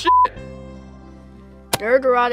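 A short, loud, steady electronic beep of one pitch, about a quarter of a second long, right at the start, then a faint steady hum. A sharp click comes near the end, just before a man starts speaking.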